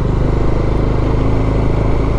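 Motorcycle engine running steadily at low road speed, heard from the rider's seat, with a steady rush of road noise.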